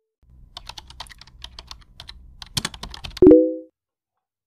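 Computer keyboard typing sound effect: a quick run of key clicks over a low hum. About three seconds in comes a short, loud chime, the loudest sound, dying away within half a second.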